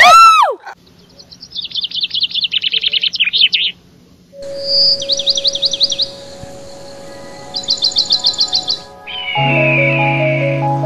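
Birds chirping in several bursts of rapid high trills. It opens with a short falling yelp from a dog, and a sustained music chord comes in near the end.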